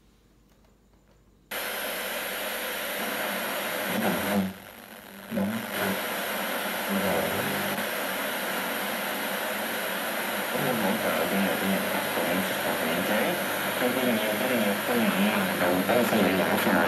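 Sharp QTY1 boombox radio switched on about a second and a half in: loud static hiss as it is tuned, dropping briefly about four and a half seconds in, then a broadcast talk voice coming through the hiss.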